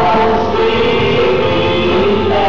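A congregation singing a worship song together, the voices holding long notes.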